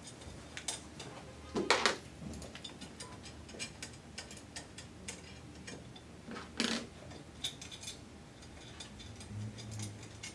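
Metal nuts being worked off the top-flange bolts of a Crystal Dragon still column by hand and set down. There are light metallic ticks and clinks throughout, with two louder clanks about one and a half seconds in and again after six and a half seconds.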